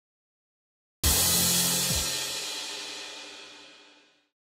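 A single cymbal crash with a low boom underneath, breaking in suddenly out of silence about a second in and ringing away over about three seconds: a dramatic music sting on the film's soundtrack.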